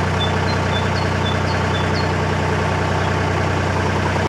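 A narrowboat's diesel engine running steadily at low cruising revs, an even low hum. A small bird chirps faintly several times in the first couple of seconds.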